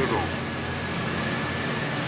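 Mining machinery running steadily underground: an even mechanical noise with a faint high whine.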